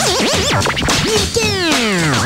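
Record scratching on a turntable over a music beat: the scratched sound sweeps quickly up and down in pitch, then slides down in a long falling sweep in the second half.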